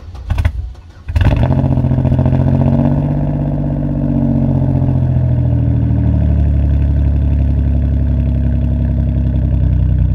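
Pontiac Grand Prix engine cranking briefly and catching about a second in, after earlier failed tries on a dead battery. It runs at a slightly raised idle for a couple of seconds, then settles into a steady lower idle heard at the tailpipe.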